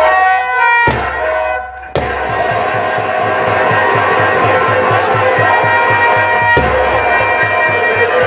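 Live nautanki band music: harmonium holding tones, then from about two seconds in a fast, steady drum beat of about five strokes a second on nagada and dholak joins under it.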